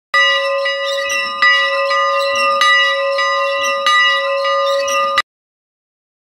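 A single church bell hung in a small wooden frame being rung repeatedly, with a strong stroke about every second and a quarter, each stroke ringing on into the next. The ringing cuts off suddenly about five seconds in.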